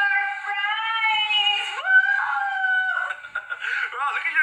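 A child's long, high-pitched held scream that jumps higher about two seconds in and breaks off near the three-second mark, followed by quieter voices.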